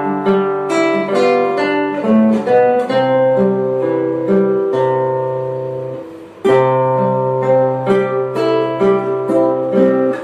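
Two nylon-string classical guitars playing a duet: a plucked melody over long-held bass notes. The phrase dies away about six seconds in, and a new phrase starts with a firm chord.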